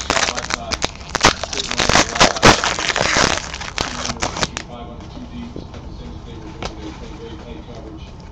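Foil trading-card pack wrappers crinkling and cards being handled: a dense run of crackling and clicking that settles down about halfway through.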